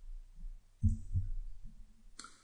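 Two soft low thumps close together about a second in, over a steady low mains hum.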